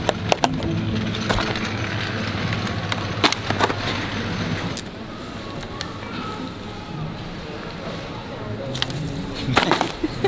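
Small plastic wheels of a pulled shopping basket trolley rolling over a tiled floor: a steady rumble broken by a few sharp clicks and knocks.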